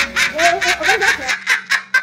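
A woman laughing hard, a rapid run of ha-ha bursts at about six a second.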